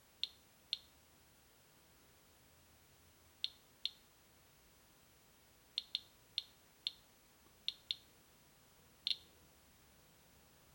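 Radiation Alert Inspector EXP Geiger counter clicking with its audio on, about a dozen sharp clicks at irregular intervals, some in quick pairs, each one a detected radiation count as the probe sits on a granite tile.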